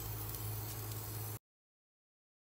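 Raw lamb rib chops sizzling faintly on the hot wire rack of a preheated air fryer basket, over a steady low hum. The sound cuts off to dead silence about one and a half seconds in.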